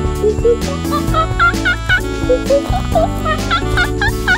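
A man imitating monkey calls: quick hooting whoops that come in a cluster about a second in and again near the end, over upbeat background music.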